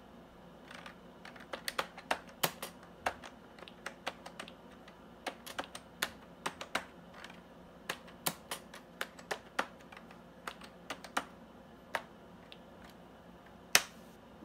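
Typing on the Compaq Deskpro 286's keyboard: irregular key clicks throughout, with one louder keystroke near the end.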